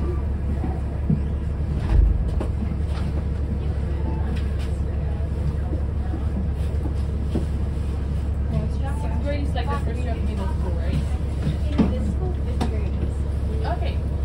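City bus cabin while the bus stands still: a steady low engine rumble, a single thump about two seconds in, and indistinct voices of passengers.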